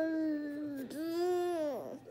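A household pet crying in two long, high calls, each held steady and then falling away at the end: it wants to be let inside.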